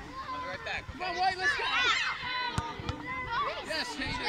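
Several children calling and shouting to each other while playing soccer, their voices overlapping, with no clear words.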